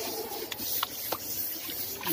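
Brush scrubbing on a wet elephant's hide: a steady hiss with a few faint clicks.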